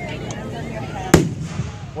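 A single loud firework bang about a second in, over the talk of nearby spectators.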